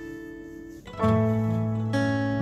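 Background music played on acoustic guitar: a held chord rings and fades, then a new, fuller chord is struck about halfway through.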